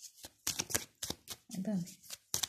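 Tarot deck being shuffled by hand, heard as a quick, irregular run of sharp card snaps and clicks.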